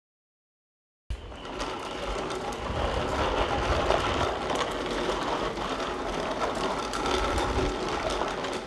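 Hard plastic wheels of a child's ride-on tricycle rolling on concrete: a steady rattling rumble that starts suddenly about a second in.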